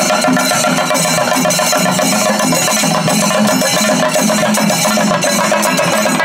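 A chenda melam: a group of Kerala chenda drums beaten fast with sticks, a loud, dense, unbroken rolling rhythm.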